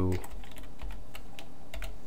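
Typing on a computer keyboard: a handful of separate keystrokes clicking, unevenly spaced.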